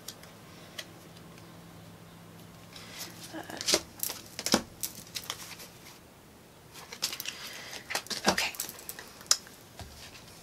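Tarot cards being handled and sorted: a run of short crisp clicks and rustles about three seconds in, and another from about seven to nine seconds.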